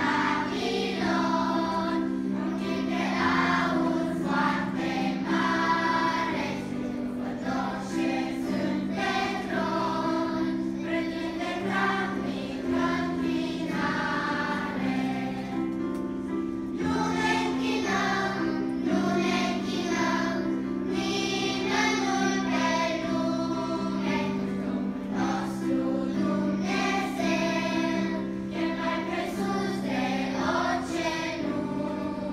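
Children's choir singing a hymn in unison over steady held keyboard chords.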